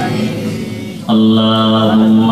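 A man's voice chanting over a loudspeaker system. A phrase fades out, and about a second in a long note is held steady on one pitch.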